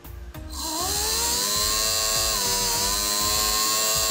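Small brushed DC motor rewound with 22 SWG wire spinning up about half a second in, its whine rising in pitch and then holding steady at very high speed, with a loud hiss from the brushes.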